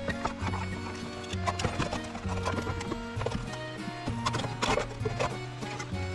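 Background music with a stepping bass line under held notes, with sharp knocks scattered through it.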